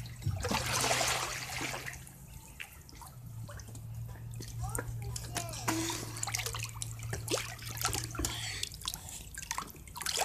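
Pool water splashing and dripping as a swimmer moves through it, loudest in a burst of splashing in the first two seconds, then lighter trickles and drips. A steady low hum runs underneath and stops shortly before the end.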